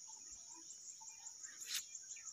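Insects in the field keep up a steady high-pitched trill, and a brief rustle comes near the end.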